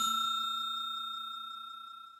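The ringing tail of a notification-bell 'ding' sound effect: a bright bell tone that fades steadily away.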